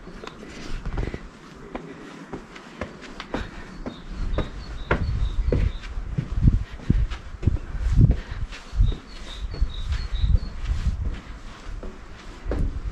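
Footsteps walking up stone steps, a run of short thuds that grow firmer about a third of the way in.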